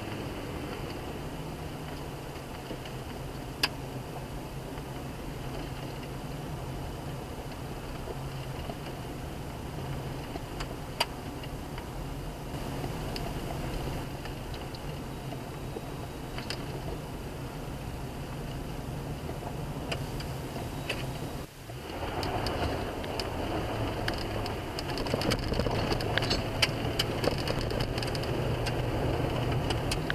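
In-cab sound of a 2005 Chevy Colorado's 3.5-litre DOHC inline five-cylinder engine pulling steadily, with tyre noise on a gravel road and scattered sharp ticks. About two-thirds of the way through the sound briefly drops, then returns louder.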